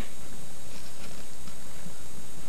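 Steady background hiss with no clear sound event: a lull between speech.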